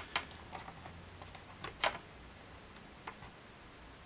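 Faint, scattered small clicks and taps of fingers handling a plastic action figure while fitting a tiny rubber violin into its hand; the loudest click comes a little under two seconds in.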